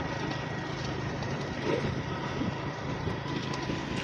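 Motorcycle riding at a steady speed: a constant engine hum mixed with road and wind noise.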